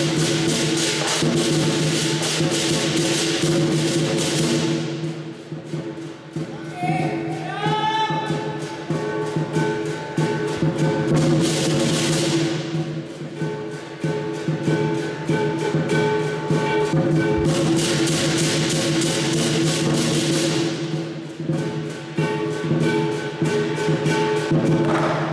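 Southern lion dance percussion: a big drum beating a rapid, continuous rhythm with gong and cymbals. The cymbals swell into loud crashing passages three times, at the start, about halfway through and again near the end, with quieter drumming between.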